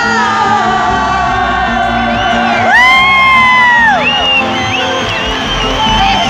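Live band music with a woman singing through a concert PA, heard from among the crowd. About three seconds in, a loud voice rises into a high held call for about a second, then drops away.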